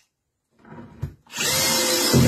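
Bosch cordless drill-driver driving a wood screw into a board: faint scraping as the screw is set, then the motor runs at a steady whine under load from about halfway through.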